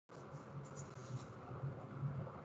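Faint room noise on a microphone, cutting back in abruptly just at the start after a moment of dead silence, then running on unevenly at a low level.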